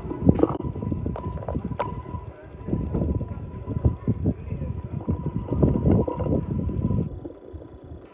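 Wind buffeting the microphone of a handheld phone, an irregular gusty low rumble with a few sharp clicks. A faint steady high tone runs through it.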